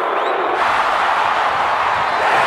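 Arena crowd cheering, a loud, steady roar that swells in about half a second in.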